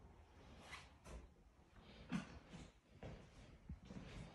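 Near silence in an empty room, broken by several faint, short rustling sounds.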